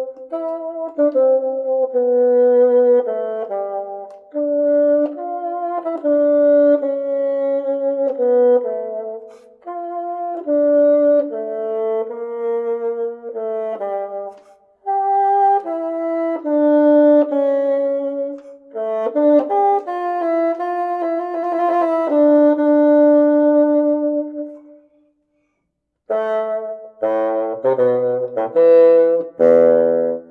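Solo bassoon playing a slow, lyrical melody in phrases of held notes, with short pauses between the phrases. Near the end comes a quicker run of notes that dips into the low register.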